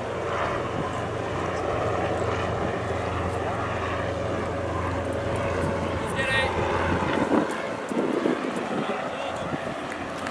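Voices of a group of football players over a steady low drone, which eases off about seven seconds in.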